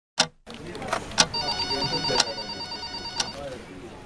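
A trilling electronic ring, like a telephone's, from about a second and a half in for two seconds, over background voices and sharp clicks about once a second.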